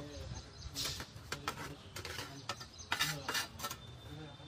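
Hand trowel scraping and knocking as wet concrete is worked into a steel column formwork around a rebar cage: a run of irregular sharp scrapes and clinks, busiest about three seconds in, with voices talking in the background.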